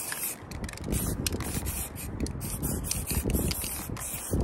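Aerosol spray-paint can hissing onto a canvas: a longer spray at the start, then a run of short spurts.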